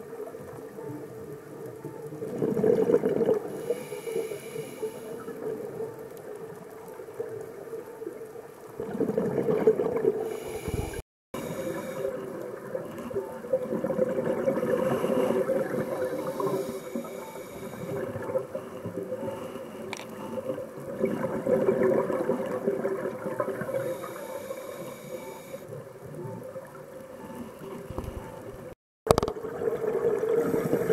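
Underwater sound of a scuba diver's breathing: bubbles from the regulator exhaust gurgle in swells every several seconds over a steady low hum. The sound drops out briefly twice.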